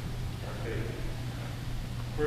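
A short pause in a man reading aloud, with only faint traces of his voice and a steady low hum beneath.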